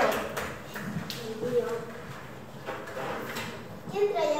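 Quiet, indistinct voices of a few young people talking, with a few light taps.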